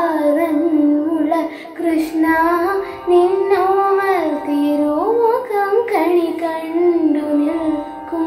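A girl singing a Malayalam devotional song solo, her voice gliding and bending through ornamented phrases with brief breaths between them, over a faint steady drone.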